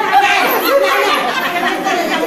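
Several women's voices talking and calling out over one another: loud, overlapping group chatter.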